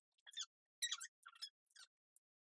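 Iron-on vinyl and its plastic carrier sheet squeaking and crinkling faintly in several short bursts as the cut vinyl is handled and weeded on a light pad.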